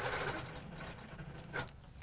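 Handi Quilter longarm quilting machine stitching along an acrylic arc ruler, winding down and stopping about half a second in. A short click follows about a second and a half in.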